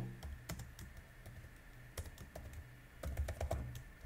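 Computer keyboard typing: quiet, irregular key clicks as a short word is typed.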